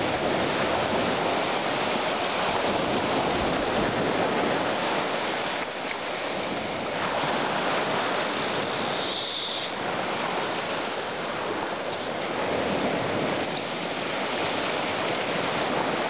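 Small lake waves washing onto a sandy beach: a steady rushing of surf with slight swells in loudness.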